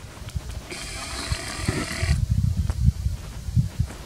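Wind buffeting the microphone: an irregular low rumble throughout, with a spell of hiss lasting about a second and a half near the start.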